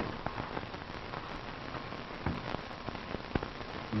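Steady rain-like hiss with scattered faint crackles and ticks.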